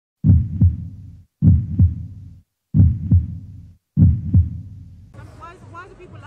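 Logo intro sting: four loud pairs of deep double thumps, a pair about every 1.2 s, each fading quickly. About five seconds in, background voices take over.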